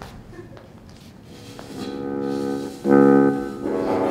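A steady, buzzing brass-like drone standing in for a didgeridoo being played. It begins a little over a second in and swells to a loud peak about three seconds in.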